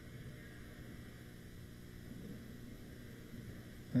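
Faint steady background hum from the recording, with faint indistinct tones briefly around the middle and no clear event.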